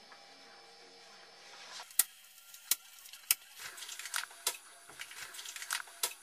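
A wallet and paper money being handled: three sharp clicks about two-thirds of a second apart, then a run of small crackles and rustles.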